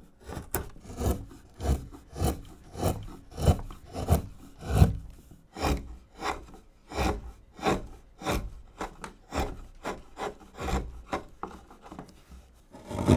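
Hand wood-carving gouge slicing through basswood in short repeated push cuts, about three strokes every two seconds, each a brief scrape as a shaving lifts away.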